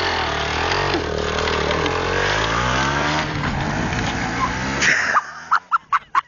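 Small dirt-bike engine running close by, its pitch rising and falling with the throttle. It drops away sharply about five seconds in, and a run of short bursts follows near the end.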